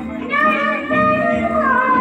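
Hindi devotional song to Ram (a Ram bhajan): a high voice sings long held notes over instrumental backing, sliding down in pitch near the end.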